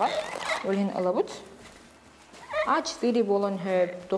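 A woman talking, with a brief rustle of paper towel at the very start.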